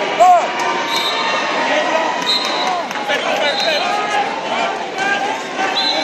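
Wrestling shoes squeaking on the mats, many short squeaks scattered throughout, over the chatter of spectators echoing in a large arena.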